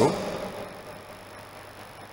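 A man's amplified voice dies away in the hall's echo. After that there is only faint, steady room and sound-system noise.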